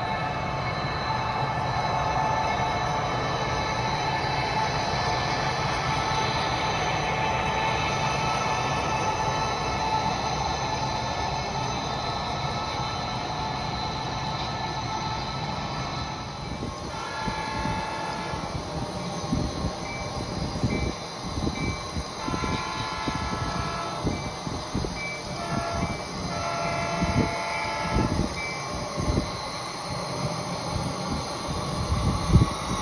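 Sound-equipped HO scale model diesel locomotives running with a steady engine rumble. About halfway through, the horn sounds a series of blasts of varying length, with sharp clicks in between.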